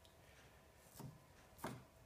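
Near silence broken by two light taps, a faint one about a second in and a louder one shortly after, as a golf-ball-handled sanding stick is turned and repositioned against a clamped knife blade.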